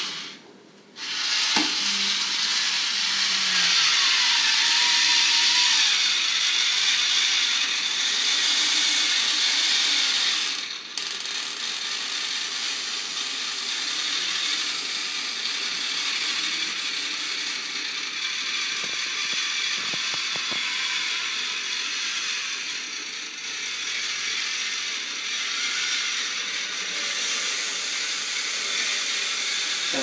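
A can opener running steadily as it cuts around a can lid, with a short break about ten seconds in. This opener cuts only part of the way round the lid.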